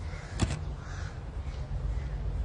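Phone being handled by hand: a sharp tap about half a second in as a finger reaches the phone, over a steady low rumble of handling. A faint bird call follows about a second in.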